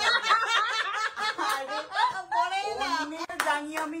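People talking and laughing, with one sharp smack a little over three seconds in.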